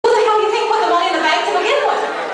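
A high-pitched woman's voice on a recorded soundtrack played over a hall's sound system, its pitch gliding and wavering, with no words made out.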